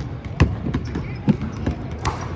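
Several basketballs bouncing on a hardwood court: irregular thuds from more than one ball, the loudest about half a second in, in a large echoing arena.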